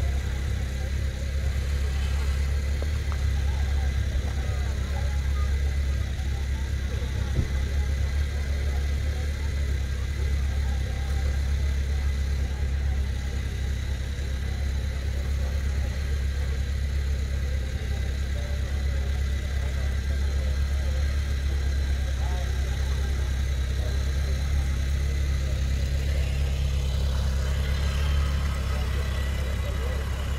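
A vehicle engine idling steadily, a constant low rumble, with faint spectator voices underneath.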